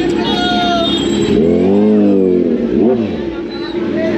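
Kawasaki Z900 inline-four engine revved in two throttle blips, a longer one about one and a half seconds in and a short, sharp one near three seconds, over the voices of a market crowd.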